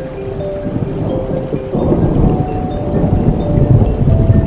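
Steady rain with soft background music of slow held notes; a deep rumble of thunder rises about two seconds in and grows louder toward the end.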